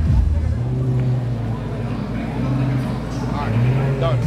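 Lamborghini Gallardo's V10 engine running at low revs as the car creeps past, a steady low drone under crowd chatter.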